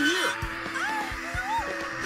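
Tense background music from a cartoon soundtrack, with short wordless voice sounds like gasps or whimpers gliding up and down over it.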